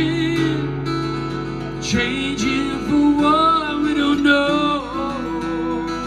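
Acoustic guitar strummed live, with a voice singing long, wavering held notes over it in the second half.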